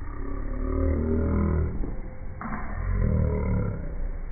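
A person's voice making a low, drawn-out growl-like sound, twice: a long one at the start and a second, breathier one a little after halfway.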